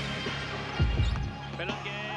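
A basketball being dribbled on a hardwood court, with sharp thumps near the middle, mixed under background music with a steady bass line.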